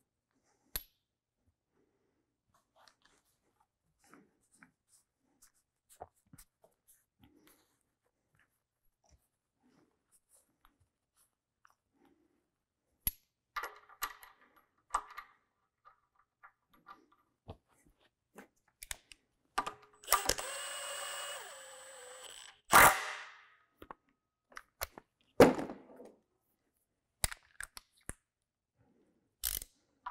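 Hand tools clinking and clanking on metal: scattered faint clicks at first, then busier handling in the second half with a few sharp, ringing clanks and a steady noise lasting about three seconds.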